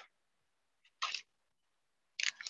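Near silence with a single short, soft click-like noise about a second in.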